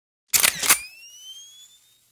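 Camera shutter sound effect: a double shutter click, followed by a thin, high tone that rises in pitch and fades out within about a second.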